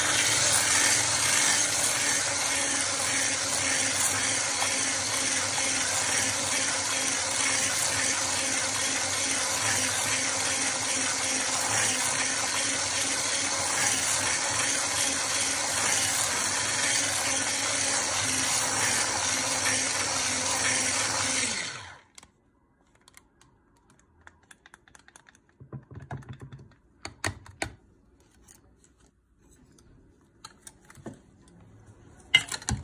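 Handheld electric stick blender running steadily as it whips thick body butter in a plastic bowl, switched off suddenly about 22 seconds in. A few faint knocks and clicks follow.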